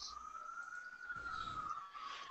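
A faint single high tone that slowly rises a little in pitch and falls back again over about two seconds, like a distant siren.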